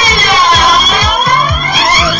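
House music from a soulful funk DJ mix: a steady four-on-the-floor kick drum at about two beats a second under a bass line, with sweeping tones gliding up and down over it.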